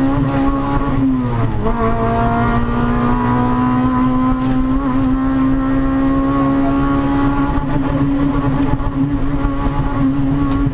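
Honda Civic rally car's engine revving hard under full throttle, heard from inside the cabin. A gear change about a second in drops the pitch briefly, then the revs climb steadily again.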